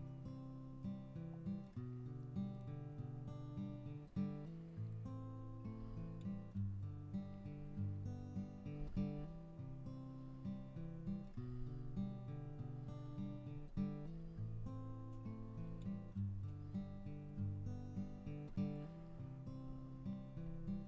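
Background acoustic guitar music, plucked notes and strummed chords.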